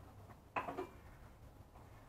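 Faint room tone with one short click and a brief rattle about half a second in, as a pair of offset hand snips is picked up.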